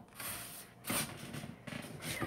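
Faint rustling and handling noise from a wooden nutcracker figure being picked up and moved, with a brief louder rustle about a second in.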